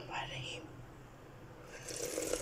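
Faint, breathy whispered voice sounds, briefly at the start and again near the end, with a quiet gap between.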